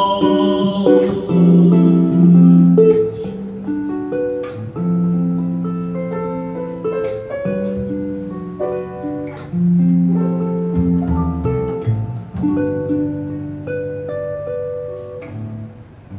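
Instrumental passage of a jazz ballad: a guitar plays a line of single plucked notes and chords over low plucked upright bass and piano. A held sung note ends right at the start.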